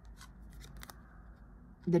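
Faint rustle and a few small clicks of a tarot card being slid and lifted from a sequined tablecloth.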